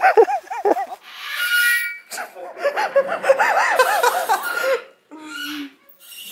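A person laughing in quick rising-and-falling bursts, in two runs: a short one at the start and a longer one from about two seconds in. A short steady low voiced sound follows near the end.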